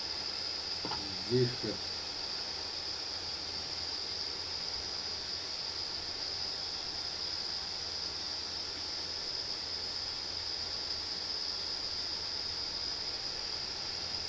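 A steady high-pitched whine runs without change, with a faint low hum underneath.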